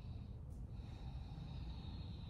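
A person breathing audibly and slowly in a held yoga pose. One breath trails off as it begins, then a long, even breath starts just over half a second in and runs on. A small click comes just before it, all over a low steady room rumble.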